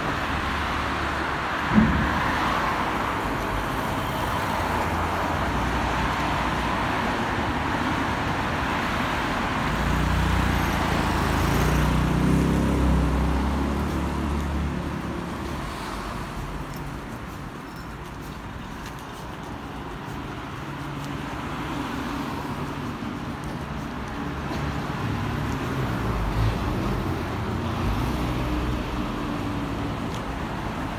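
Road traffic passing on a city street, with a louder low engine rumble swelling and fading about ten to fifteen seconds in. A single sharp knock sounds about two seconds in.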